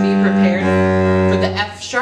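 Cello played with the bow: two held notes of a D major broken-thirds exercise. The note changes about half a second in, and the second note stops shortly before the end.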